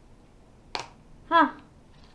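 Clear plastic gashapon capsule snapping open: a single sharp plastic click as the two halves come apart.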